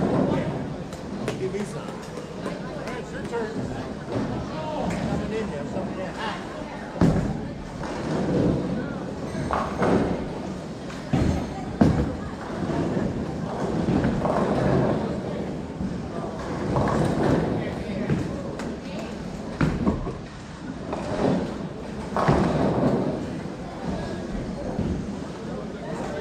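Bowling alley din: bowling balls thudding onto the lanes and crashing into pins, a string of sharp knocks spread through the stretch, over steady background chatter of people in a large hall.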